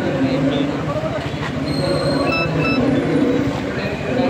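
A woman talking over a steady background of traffic noise, with two short high beeps about midway through.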